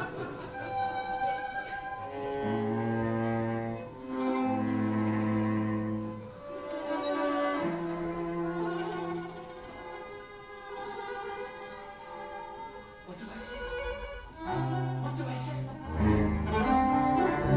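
Viola, cello and double bass bowing together: long held low notes that change pitch every second or two, with higher sustained lines above them. The playing thins out and grows quieter in the middle, then swells again near the end.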